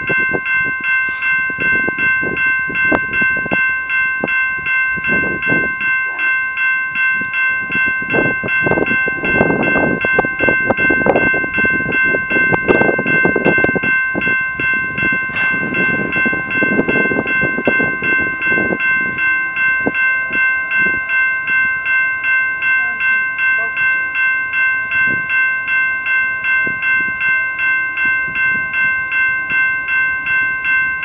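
Railroad grade-crossing warning bell ringing steadily for an approaching train, a bit under two strikes a second, with irregular low rumbles coming and going through the first two-thirds.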